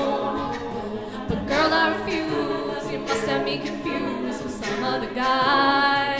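Mixed-voice a cappella group singing layered harmonies under a female lead vocalist, all voices and no instruments.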